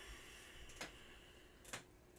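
Near silence: room tone with a faint click about a second in and a couple more near the end.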